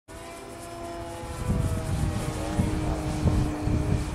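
Radio-controlled model airplane flying overhead, its motor giving a steady whine that wavers slightly in pitch, with a low, uneven rumble rising about one and a half seconds in.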